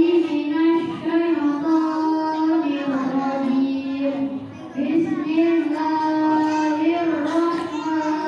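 A boy reciting the Qur'an in melodic tilawah style, with long held notes that bend and ornament up and down, and a short break for breath about four and a half seconds in.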